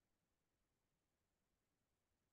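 Near silence: only a faint, even background hiss.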